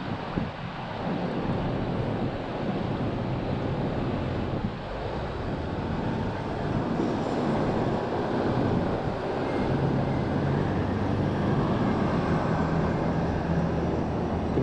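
Steady road traffic noise from the street below, with wind on the microphone. A deeper engine hum from a passing vehicle rises over it about two-thirds of the way through.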